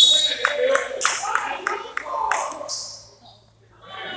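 Gym sounds during a basketball game: voices calling out over a quick run of sharp smacks, about three a second, that die away after two and a half seconds, leaving a quieter hall near the end.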